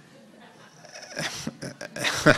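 Audience laughter tailing off to a faint room hush, then a few scattered laughs about a second in.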